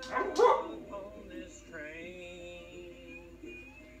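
A dog barks near the start, then gives a long whine that rises and holds for over a second, over a song playing in the background.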